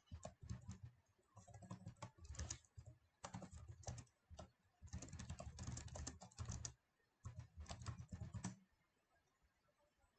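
Faint computer keyboard typing: bursts of rapid keystrokes with short pauses between them, falling quiet for the last second or so.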